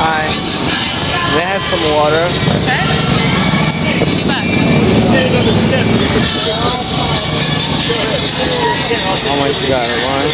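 Background voices over a low motorcycle engine rumble that grows louder about four seconds in and eases off about two seconds later.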